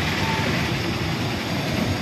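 Steady low rumble and hiss of background vehicle noise, with no distinct knocks or clicks.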